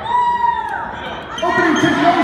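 Basketball bouncing on a hardwood gym floor, with a long high shout that rises and falls in the first second, then players and spectators talking over one another.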